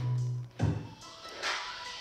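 Persian trap dance track playing, with deep bass notes landing on a slow, regular beat.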